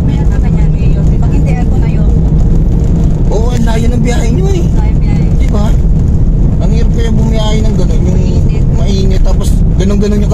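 Steady low rumble of a car's engine and road noise inside a taxi cabin, with people talking over it.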